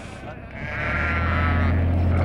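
A sheep bleating: one quavering call starting about half a second in and lasting about a second, over a steady low hum.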